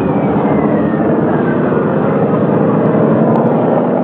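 Steady engine-like rumble of a spaceship sound effect, with a faint whistle gliding down in pitch over the first second and a half.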